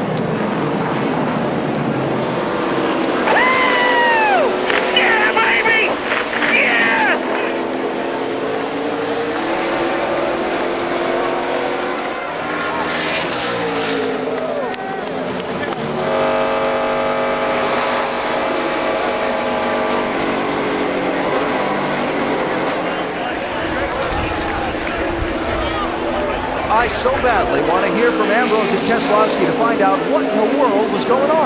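NASCAR Cup stock cars' V8 engines running on track, their pitch rising and falling through gear changes and passes, with a steadier engine note from inside a car around the middle. Voices are mixed over it.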